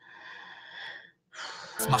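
A faint breath with a slight whistle for about a second, then a second short breath. Rap music with a beat cuts in just before the end as the song resumes.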